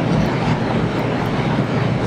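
Steady rushing background noise of the recording, with no voice, nearly as loud as the speech around it.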